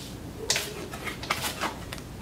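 Playing cards being dealt from a shoe onto a felt blackjack table: four short, sharp card snaps and slides over about a second.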